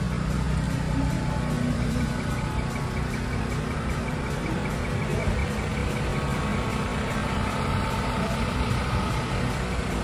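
Diesel truck engines idling, a steady low rumble that holds even throughout.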